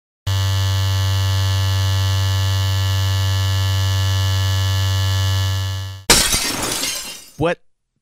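Electric hair clippers buzzing steadily for about six seconds. The buzz is cut off by a sudden shattering crash of something breaking, which rings out over the following second.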